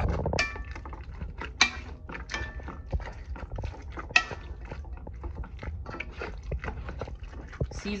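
A utensil scraping and clinking against a bowl as mashed sweet potatoes are stirred together, in irregular strokes with a few brief ringing clinks.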